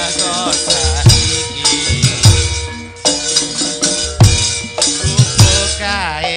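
Javanese gamelan music with loud, irregularly spaced drum strokes and ringing metal tones, and a woman singing over it in places.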